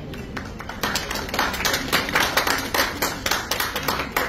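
Audience applauding: many hands clapping unevenly, starting just under a second in and filling out by about a second.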